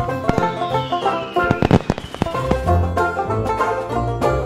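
Intro music with a firework sound effect laid over it: a descending whistle during the first second or so, then a quick burst of crackling pops around the middle.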